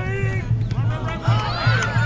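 Several high children's voices shouting and chanting over one another, opening with a single long held call.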